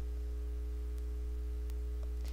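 Steady low electrical hum in the recording, with two faint clicks about a second apart.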